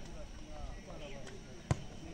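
Murmur of spectators' voices, and about a second and a half in a single sharp thud of a leather football being struck.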